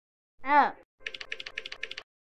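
A short voiced "ah"-like cry whose pitch rises and falls. This is followed by a rapid run of clicks, about ten a second, lasting about a second, like keyboard typing.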